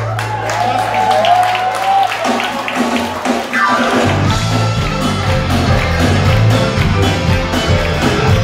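Live band in a club: a long held low bass note with a voice line over it, a falling glide a little past halfway, and then the full band coming in with drums, bass and electric guitar in a steady rock beat.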